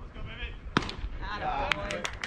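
A single sharp crack about a second in as a pitched baseball reaches home plate, followed by spectators' voices.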